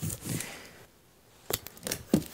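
Paper rustling as a sticker label is peeled off its backing, then two sharp taps as hands press it onto a cardboard box.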